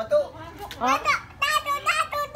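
A young child's voice, calling out and babbling without clear words.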